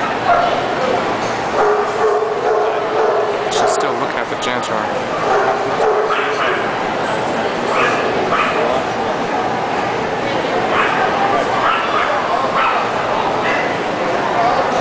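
Dogs barking in a series of short barks over a steady background of crowd chatter.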